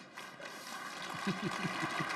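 Large audience applauding, the clapping starting just after a brief lull and swelling steadily.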